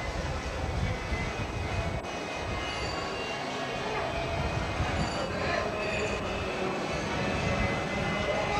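Steady low rumble and rattle of a moving vehicle heard from inside, with faint voices mixed in.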